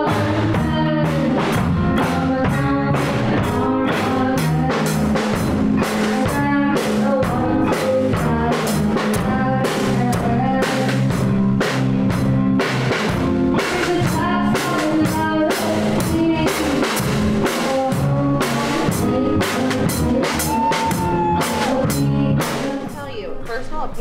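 A live rock band (drum kit, electric guitar, bass guitar and a boy singing into a microphone) playing a song over a steady drum beat. The song ends a second or two before the end.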